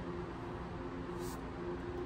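Steady low machine hum with a faint pitched drone and a hiss beneath it.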